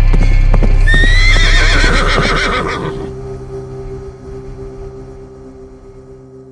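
Logo-sting sound effect: galloping horse hoofbeats over a loud, deep musical drone, then a horse whinny about a second in. It dies away into a sustained musical tone that fades out.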